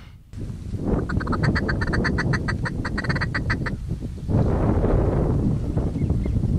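A rapid run of duck quacks, about six a second, lasting close to three seconds, followed by wind noise on the microphone.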